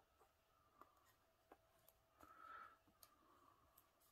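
Very faint knitting sounds: a few light clicks from metal knitting needle tips and, about two seconds in, a brief soft scratch of yarn drawn over the needles as stitches are worked.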